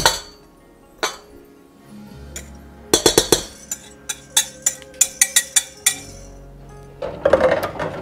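A wire whisk and a glass measuring cup clinking against a stainless steel mixing bowl as flour is poured in and stirred. A quick cluster of clinks comes about three seconds in, then a run of lighter taps, about four or five a second.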